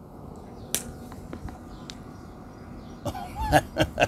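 A few faint clicks and smacks, then from about three seconds in a short voiced sound followed by laughter in quick, even pulses, about four a second.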